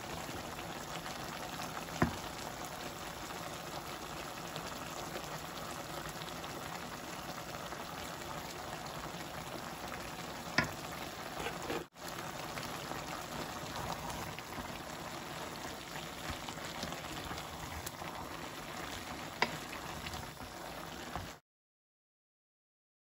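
Chicken curry with flat beans simmering in an aluminium pot on a gas hob: a steady hiss of bubbling liquid, broken by three short sharp clicks spread through it.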